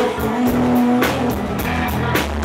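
Live country band music, loud and slightly distorted as recorded from the audience: drum hits with a held note over the band.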